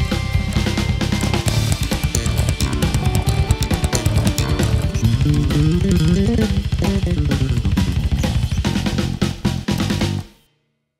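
Spector Performer 5-string electric bass played slap-style: a fast, dense stream of thumped and popped notes. About five seconds in, a run climbs in pitch and then falls back down.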